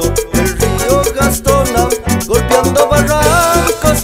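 Instrumental passage of upbeat Latin band music: a wavering lead melody over bass and a steady percussion beat, with no singing.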